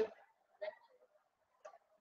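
Two faint, brief clicks of a headset being handled, one about half a second in and one near the end.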